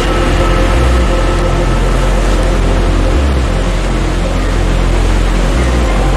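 Loud, steady rush of a small waterfall pouring over rocks into a stream pool, with the low bass notes of a hip-hop backing track underneath.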